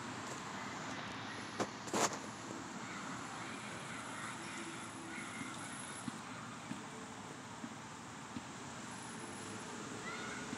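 Quiet, steady outdoor background noise with no voices, broken by two short knocks about one and a half and two seconds in and a few fainter ticks later on.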